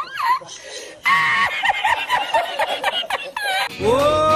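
A man laughing hard in quick, repeated high-pitched bursts, from an edited-in laughing meme clip, starting about a second in.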